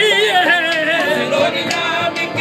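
Live qawwali: a male lead voice holds a wavering, ornamented note over a harmonium's steady chords, with chorus voices and light percussion strokes.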